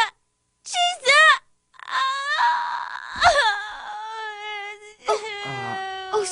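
A young girl's voice wailing in long, drawn-out cries: a short vocal sound about a second in, then two long held wails.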